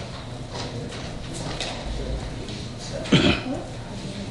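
A single short cough about three seconds in, over quiet room noise with faint scattered clicks.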